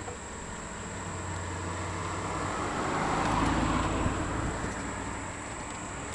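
A car driving past on a paved street, its tyre and engine noise swelling to a peak about halfway through and then fading away.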